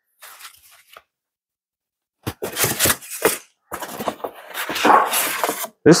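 Plastic packing bag crinkling and rustling in irregular bursts as the foam elevator halves of a model airplane are unwrapped. There is a faint rustle at first, then louder crackling from about two seconds in.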